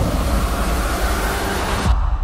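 Loud, dense rumbling noise from a film trailer's action sound effects, heavy in the low end, cutting off abruptly near the end as the trailer cuts to black.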